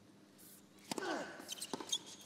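A tennis ball struck hard on a serve about a second in, with the server's grunt falling in pitch, followed by quick knocks of the ball bouncing on the hard court and the return off the racquet.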